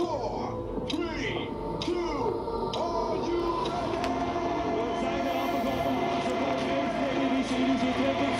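Public-address announcer's voice carried over a street crowd, followed by steady held music tones with crowd noise underneath. A couple of faint sharp clicks sound about three seconds in. There is no loud bang.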